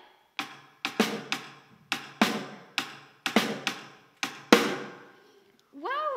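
A small hand-held drum struck about a dozen times with homemade drumsticks in an uneven, halting rhythm, each hit fading quickly; the playing stops about a second before speech resumes.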